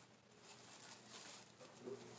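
Near silence, with faint soft rustling from handling a mug over bubble wrap.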